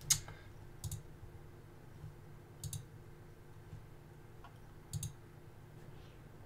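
A few sharp clicks from computer input at a desk, the loudest right at the start and two of them coming as quick double clicks, over a faint steady electrical hum.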